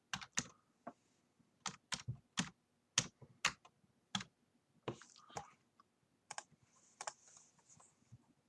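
Typing on a computer keyboard: irregularly spaced keystrokes, some in quick pairs, as an email address is entered.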